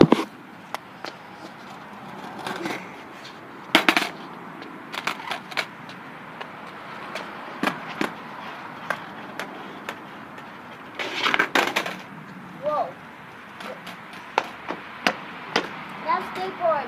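Skateboard rolling on concrete, its wheels running with a steady rumble, broken by sharp clacks of the board hitting the ground: single ones about four and eight seconds in, and a quick cluster about eleven seconds in.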